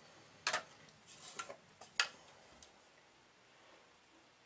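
A few light clicks and taps as a tennis racket is handled and set down on a wooden balancing jig; the sharpest come about half a second in and about two seconds in.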